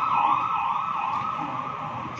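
An emergency vehicle's siren in a fast rising-and-falling yelp, about two cycles a second, growing fainter toward the end.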